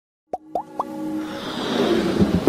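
Animated logo intro sound effects: three quick pops, each gliding upward in pitch, followed by a swelling whoosh with held musical tones building up.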